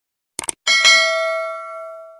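A quick double mouse click, then a small notification bell chime struck twice in quick succession, ringing and fading away over about a second and a half. This is the sound effect of a subscribe-and-bell animation.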